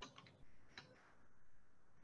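Near silence, with a few faint clicks in the first second.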